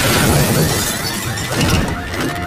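Glass shattering in a loud crash that starts suddenly and carries on as a dense spray of breaking debris.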